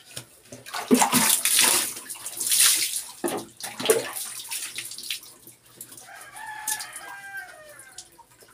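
Wet, soapy skin being scrubbed with a cloth in a run of loud rubbing strokes. About six seconds in, a rooster crows once in the background, a drawn-out call lasting over a second.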